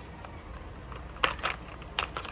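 A few light clicks and taps of a hard clear plastic drill-bit case being handled, the bits shifting inside, over a faint steady background hum.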